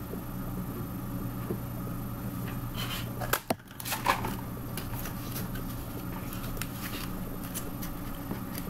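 Light clicks and rustles as a rolled paper tube and scissors are handled, over a steady low hum.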